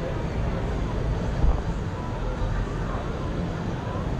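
Downtown street ambience: a steady low rumble with faint, indistinct distant voices, and a single thump about one and a half seconds in.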